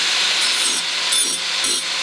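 Angle grinder grinding the notched end of a steel bicycle-frame tube, cleaning out the fish-mouth notch. There is a steady loud hiss of the wheel on metal, which turns harsher three times as the wheel bites in.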